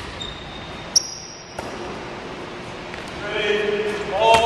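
A basketball bouncing on a gym floor, echoing in a large hall, with one sharp bounce about a second in; a man starts talking near the end.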